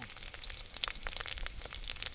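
Pork chicharon (pork rind) deep-frying in hot oil in a pot: a steady sizzle with many quick, irregular crackles and pops as the skin puffs up.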